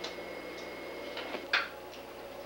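Light taps of playing cards being laid on a wooden table, with one sharper, louder click about a second and a half in.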